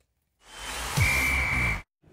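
Short TV transition sound effect: a swelling whoosh with a steady high beep in its second half and a low downward sweep, cut off suddenly.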